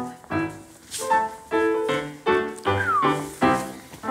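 Live piano being played: a series of struck chords and notes, each ringing on briefly before the next.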